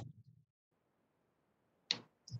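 Near silence on a video-call audio feed, broken once near the end by a brief sharp burst of noise.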